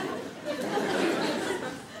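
A large theatre audience laughing together, the laughter fading away near the end.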